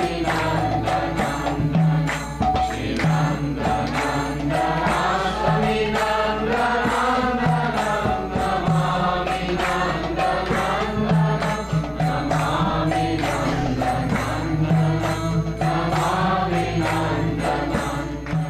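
A group of devotees chanting a devotional kirtan together in unison, with a steady low drone underneath and a regular percussive beat running through it.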